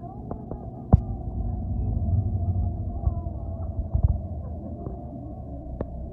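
Low, steady rumble of a city bus in motion, heard from inside, with scattered rattles and knocks. A sharp knock about a second in is the loudest.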